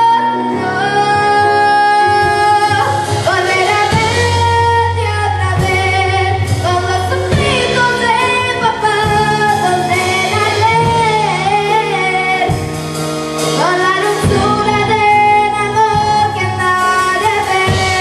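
A young girl singing a slow, sad song into a microphone, with live band accompaniment of keyboard and drums; her held notes waver with vibrato.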